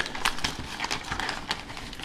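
Clear plastic bags and foil packets crinkling and rustling as a hand rummages through them, with irregular light clicks and crackles.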